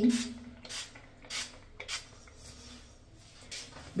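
Pump spray bottle of Redken Extreme CAT protein treatment being spritzed onto wet hair: several short hisses in the first two seconds, then quieter handling.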